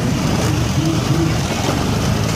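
Street traffic: motorcycle and car engines running in a steady low drone.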